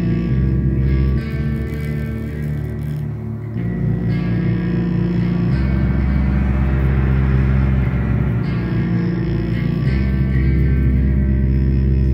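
Live instrumental music: amplified electric guitar through effects, holding low sustained notes that shift a few times, with a bassoon playing in the band.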